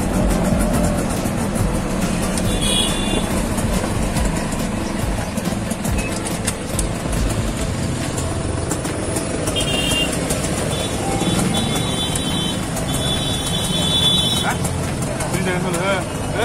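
Auto-rickshaw engine running with road traffic around it, heard from inside the open cabin. A few short high beeps come about three seconds in and again several times from about ten to fourteen seconds in.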